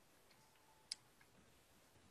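Near silence, broken by one short sharp click about a second in and a couple of much fainter ticks.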